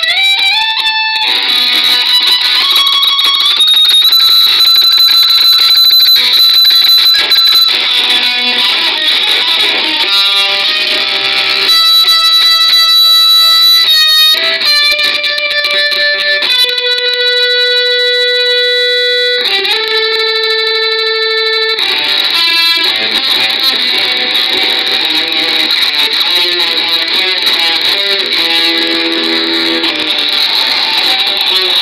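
Instrumental metal music led by a guitar playing sustained notes that slide between pitches. A quicker run of notes in the middle gives way to two long held notes.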